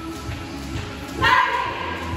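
A single short, loud dog bark about a second in, over background music with a steady beat.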